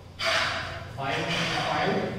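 A voice speaking, the words not made out, starting with a breathy onset just after the start.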